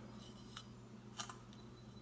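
A few faint, crisp ticks and crackles from dry flakes of pipe tobacco being handled and pulled apart over their tin, over a low steady room hum.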